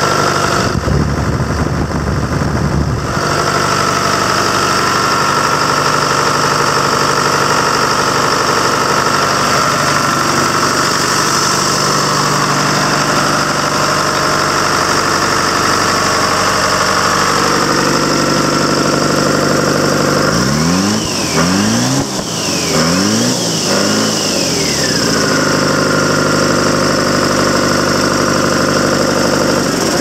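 Detroit Diesel 4-53, a turbocharged four-cylinder two-stroke diesel with a bypass blower, idling steadily with a steady high whine over the engine note. About twenty seconds in it is revved up and back down four times in quick succession, then settles back to idle.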